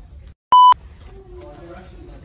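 A censor bleep: one short, loud, high-pitched electronic tone edited over a spoken word, cut in straight after a moment of dead silence, with quiet talk after it.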